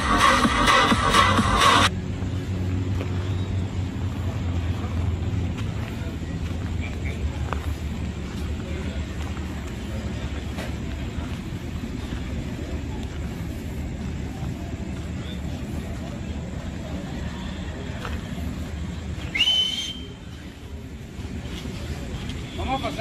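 Loud music with a driving beat for about two seconds, then an abrupt cut to a steady low rumble with faint background voices. A short rising whistle sounds near the end.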